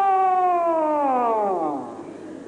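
A man's voice holding one long high note, then sliding slowly down in pitch and dying away near the end, like a vocal siren imitation.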